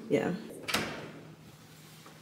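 Apartment front door's lock clicking once, sharply, a little under a second in, as the door is unlocked.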